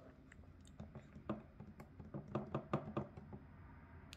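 Faint, irregular light clicks and taps, about three or four a second, over a low steady room hum.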